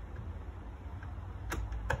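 Two light, sharp clicks about half a second apart near the end, as a cordless driver is set onto a taillight mounting screw, over a low steady hum.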